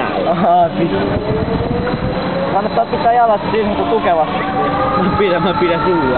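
Amusement ride machinery running with a whine that climbs steadily in pitch as the ride speeds up, mixed with riders' voices calling out in short bursts.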